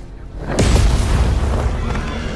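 A sudden heavy boom, like an explosion, about half a second in, fading slowly with a deep rumble under music.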